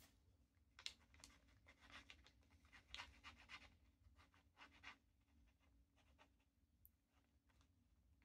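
Faint scratching of a TWSBI Mini fountain pen's nib, turned over and used on its back, moving over paper in short strokes through the first five seconds, then near quiet.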